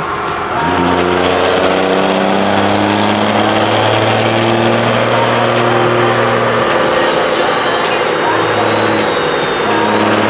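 Diesel engine of a second-generation Dodge Ram pickup running hard under load on a chassis dyno. A high turbo-like whistle rises through the first few seconds and falls back later on.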